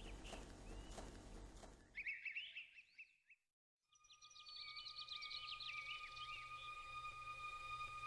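Faint countryside ambience of birds chirping. About three seconds in, a burst of chirps cuts off into a moment of complete silence. After the silence, more chirping continues over two steady held high tones.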